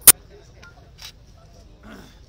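A brief audio dropout, then one very loud, sharp digital click right at the start: a glitch in the live stream, matching the broken-up picture. After it, only low outdoor background with a few faint small clicks and a short murmur of a voice near the end.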